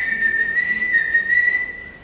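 A person whistling one long, high, nearly steady note that wavers slightly in pitch and cuts off sharply at the end, used as a sound effect in a told story.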